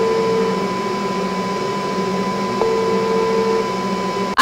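Ringback tone of a smartphone call to the 112 emergency number, heard through the phone's speaker: a low beep about a second long sounds twice, about three seconds apart, over a steady hum and a thin high tone. The call is ringing and has not yet been answered by an operator.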